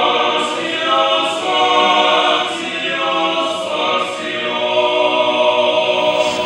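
Orthodox church choir singing a cappella in held chords, phrase after phrase, during a priestly ordination.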